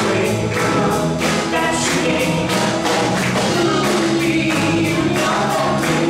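Live folk-rock band playing a song: drums keeping a steady beat, with acoustic guitar, bass and singing voices.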